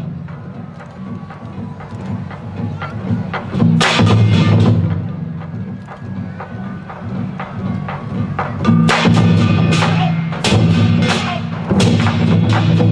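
A percussion ensemble of large Chinese barrel drums with gongs plays lion-dance rhythms. Quieter passages of lighter strikes give way to loud flurries of full drum strikes and bright crashes, one about four seconds in and another building from about nine seconds.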